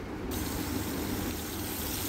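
Hot oil sizzling in a frying pan, a low, even hiss.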